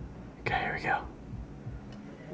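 A person whispering a few words, about half a second in and lasting about half a second; otherwise quiet room sound.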